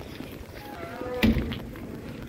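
Walking footsteps on a paved street, with a brief pitched, voice-like call about halfway through, followed at once by a loud thump.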